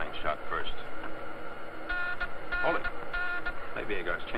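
Three short electronic beeps over a steady high whine in a spaceship's sound effects, the signal of an incoming radio call, with a few brief voice sounds near the start.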